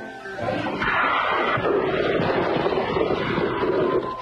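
A loud, noisy crash from a thrown bottle, a comedy sound effect that starts about half a second in and runs on steadily for about three seconds, mixed with music.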